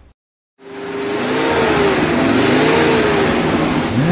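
Car engine revving over a loud rush of noise, swelling in about half a second in, its pitch rising and falling.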